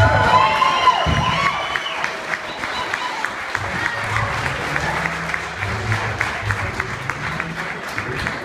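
Electric guitars ringing out their last bending notes for about the first two seconds, then audience applause with steady clapping for the rest.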